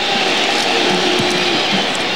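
Stadium crowd noise echoing under a domed roof during a field goal attempt, with a held musical note that cuts off about a second and a half in.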